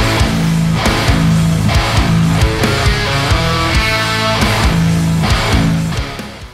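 High-gain, heavily distorted electric guitar through a Peavey Invective playing a progressive-metal chugging riff. Tight palm-muted low chugs alternate with held, ringing notes, and the playing fades out at the very end.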